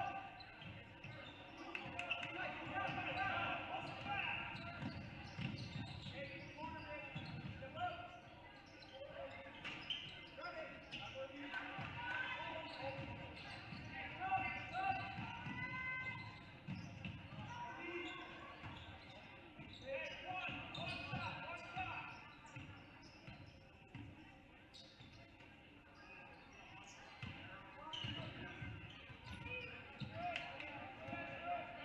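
Basketball bouncing on a hardwood gym court during play, with players and spectators calling out in the echoing gym.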